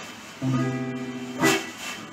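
Archtop electric guitar playing chords at the start of a song: a chord struck about half a second in and left ringing, then a sharper strum about a second and a half in.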